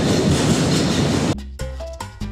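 A car-carrying shuttle train running through a rail tunnel, a loud steady rumble of rail noise. It cuts off abruptly about a second and a quarter in, as salsa music with a steady beat starts.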